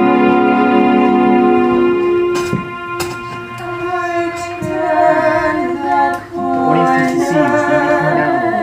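Keyboard accompaniment from a backing track holding sustained chords, then a solo voice comes in singing with vibrato about halfway through.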